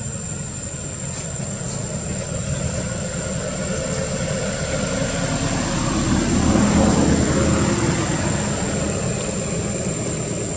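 Low steady rumble of a motor, swelling to its loudest about six to seven seconds in and then easing off, as a vehicle passes. A thin, steady high whine runs under it.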